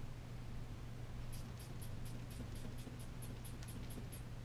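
A run of light, quick clicks, about five a second, starting about a second in, from a manual blood pressure cuff being worked on a patient's arm, over a steady low room hum.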